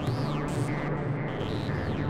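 Modular synthesizer patch on a Dreadbox Dysphonia, cabled together with a Kilpatrick Phenol, playing a low rumbling drone. Over the drone, high tones swoop up and back down, once near the start and again near the end, with short stepped tones between.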